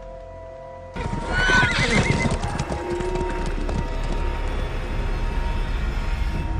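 A horse whinnies with a wavering, falling call, starting suddenly about a second in. Hoof clatter and steady music follow.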